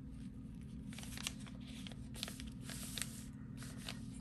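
Faint rustling and crackling of a thin decoupage paper napkin being handled and smoothed flat by hand, in small scattered crackles over a steady low hum.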